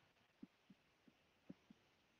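Faint, soft low taps, five in under two seconds at an uneven pace, over near silence: a stylus writing on a tablet screen.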